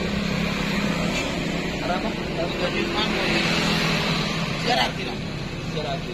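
Road traffic passing close by: a motorcycle and cars going past, a steady noise of engines and tyres on the road.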